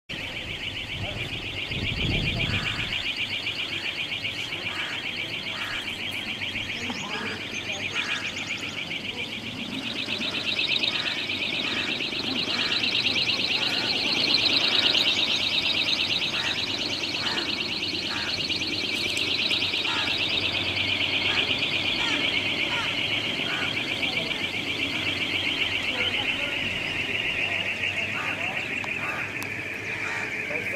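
Small 1 kW three-bladed wind turbine spinning at high speed in a strong wind, giving a high, fluttering whine that rises in pitch partway through and slowly falls again toward the end.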